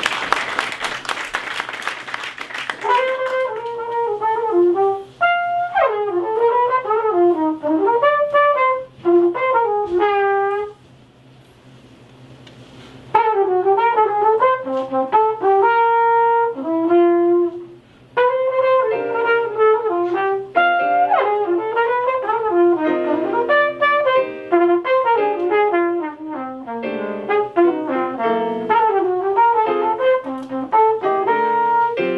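Applause dying away in the first few seconds, then an unaccompanied-sounding flugelhorn melody, phrase by phrase with a short breath pause about halfway through before the line resumes.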